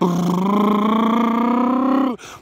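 A man humming one long, loud, unbroken note that rises slowly in pitch.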